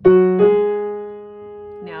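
Piano playing the first two notes of an F-sharp major scale with both hands an octave apart, in a short-long rhythm: F-sharp struck briefly, then G-sharp struck about half a second later and held, fading.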